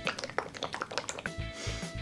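Irregular crinkles and sharp clicks of a plastic jelly-drink pouch and its wrapper being handled and opened, over quiet background music.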